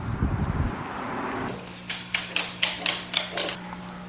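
A dog sniffing in a quick run of about seven short sniffs, over a steady low hum. The sniffing is preceded by a brief low rumble of wind.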